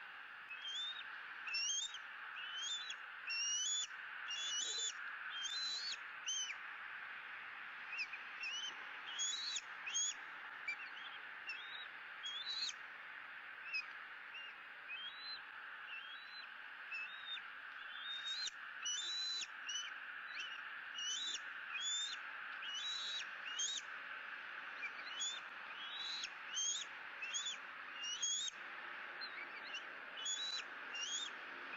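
Bald eagle eaglet's high begging calls at feeding time: short, rising chirps repeated in irregular runs, several a second, over a steady background hiss.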